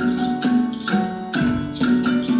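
Marimba ensemble with keyboard and percussion playing a lively tune, sharp struck notes falling on a steady beat of about two a second.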